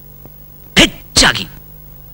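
A man's brief vocal outburst in two parts about a second in: a short sharp burst, then a slightly longer one.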